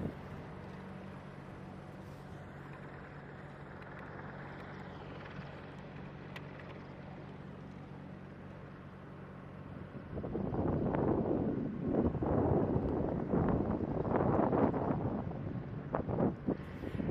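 AH-64 Apache helicopter running on the ground, its twin turboshaft engines and turning rotor giving a steady low hum. About ten seconds in, loud gusty wind starts buffeting the microphone and mostly covers it.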